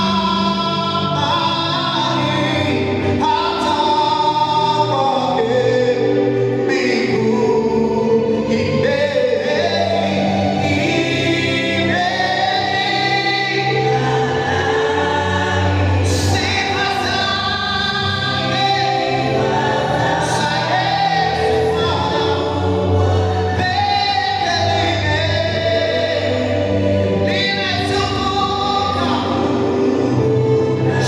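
Live gospel singing of a Swahili hymn: a male lead vocalist with a group of female backing singers, over a sustained low instrumental accompaniment.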